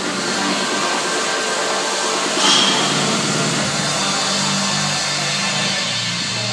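A heavy rock backing track with distorted guitar fading in and then holding, with a sharp hit about two and a half seconds in and a moving bass line after it.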